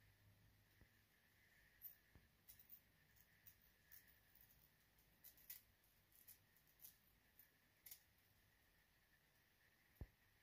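Small scissors snipping the excess HD lace along a lace-front wig's hairline: about a dozen faint, irregular snips, starting about two seconds in and stopping about eight seconds in.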